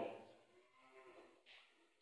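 A man's voice finishing a spoken phrase, the last syllable drawn out and fading. Then near silence with faint traces of voice and a short breathy hiss about one and a half seconds in.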